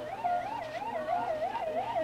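Police siren wailing in a fast, even up-and-down warble, about three swings a second.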